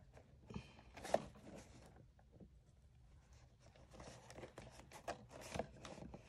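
Faint rustling and light clicks of a worn cardboard toy box with a clear plastic window being handled and turned over in the hands, with one sharper click about a second in.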